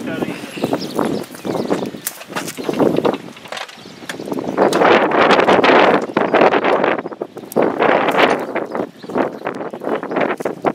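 Irregular knocks, clanks and rattles from the steel frame of a homemade rail dresine being shifted about on the track, with a dense stretch of noise about halfway through.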